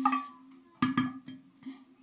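Wooden spatula knocking and scraping against a nonstick frying pan as food is scraped out into a glass bowl: about four short knocks in quick succession.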